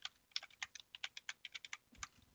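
Typing on a computer keyboard: a quick run of about a dozen and a half keystrokes, some seven a second.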